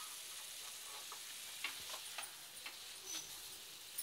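Faint, steady sizzle from cooked okra and chicken in a hot nonstick wok just taken off the gas, with a few light clicks in the second half.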